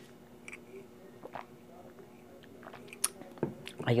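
Faint mouth sounds of a person sipping and swallowing warm lemon water from a glass, with a few small clicks. A sharp click about three seconds in as the glass is set down on the table.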